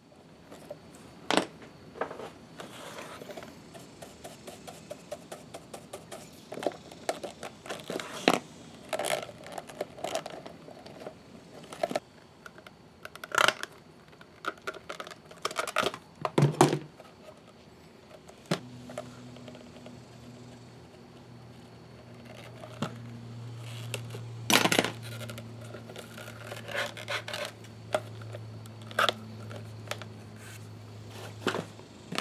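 Hands working a leather holster and its small metal buckle and strap at a workbench: scattered clicks and clinks of metal and tools, with leather rubbing. From a little past halfway a low steady hum joins in.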